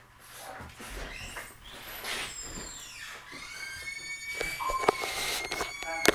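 A Boerboel puppy and a French bulldog wrestling: scuffling, with a few sharp clicks like claws on the floor. A high, steady whine holds through the second half.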